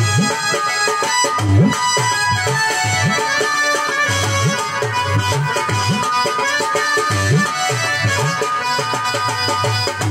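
Instrumental passage of Bengali folk music: a dholak, a rope-tensioned double-headed barrel drum, plays deep bass strokes that bend upward in pitch, about two a second, under steady held melody notes.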